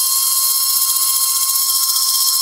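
Electric mixer grinder's motor running at full speed, wet-grinding dried red chillies with water into a paste: a steady, high-pitched whine.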